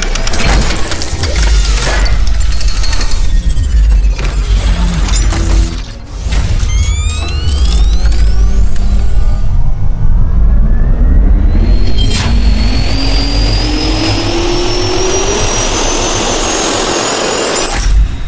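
Loud intro sound design with music: heavy rumble and crashing hits, then a jet-turbine-like whine rising steadily in pitch over the second half.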